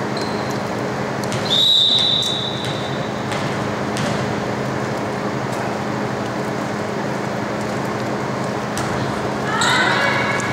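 Gym din with a referee's whistle blown once for about a second, followed by a few sharp thumps of a volleyball being bounced and served, and short rising squeaks near the end.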